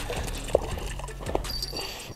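A freshly landed brook trout flopping on wet, slushy ice, with two sharp slaps about half a second and a second and a half in.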